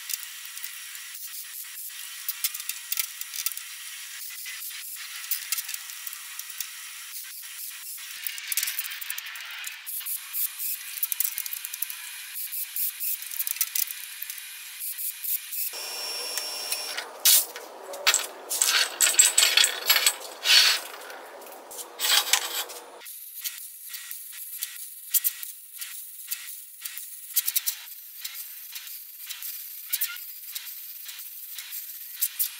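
MIG welding arc crackling and hissing in irregular runs, loudest through the middle third.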